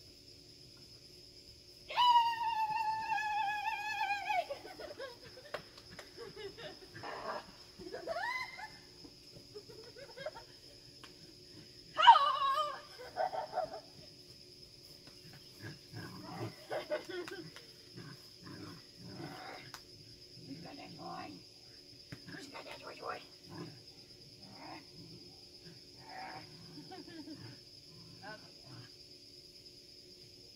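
A small dog vocalizing excitedly in play: a long, high cry that slides down in pitch about two seconds in, a second loud cry about twelve seconds in, then a string of short, rough growl-like sounds. A steady high shrill of insects runs underneath.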